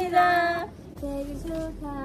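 A woman's high voice singing long held notes with no accompaniment. One loud note opens, then it drops away briefly and goes on more softly.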